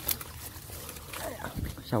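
Leaves and stems of water hyacinth and grass rustling and crackling as they are pushed through, with a sharp crackle at the very start. A man's voice speaks briefly in the second half.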